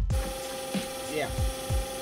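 Steady factory machinery hum with two held tones and a few low knocks under it; a voice briefly says "yeah" about a second in.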